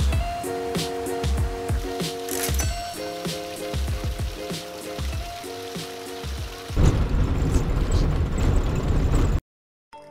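Background music of held chords over a light, regular beat. About seven seconds in it gives way to a loud, steady rushing noise that cuts off abruptly shortly before the end.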